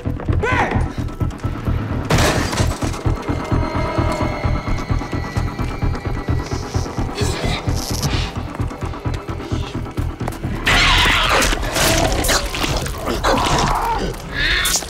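Tense action-score music with a fast, regular pulsing bass beat, overlaid with crash and impact sound effects: a burst about two seconds in and a louder, denser run of crashes from about eleven seconds.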